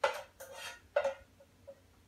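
A spoon scraping and knocking the last of the pasta sauce out of a small saucepan: a few quick scrapes and knocks over the first second or so, then a couple of faint taps.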